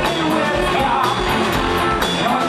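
Live rock band playing loud and steady: distorted electric guitars, bass and a drum kit with cymbals, and a singer's voice over them.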